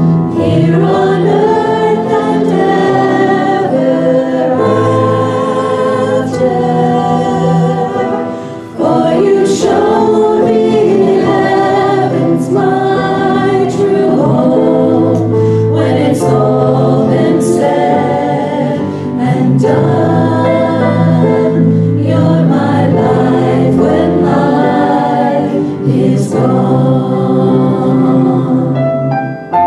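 A woman singing a worship song into a handheld microphone, with acoustic guitar accompaniment, amplified through the church sound system.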